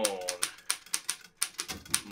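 Underwood No. 5 manual typewriter being typed on: a quick, even run of sharp key clacks, about six a second.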